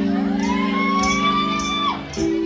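Live rock band playing: a held low chord with a high lead note that slides up, holds and drops away near the end, over drum cymbal hits about twice a second.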